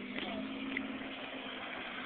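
A car engine running faint and steady as the car approaches.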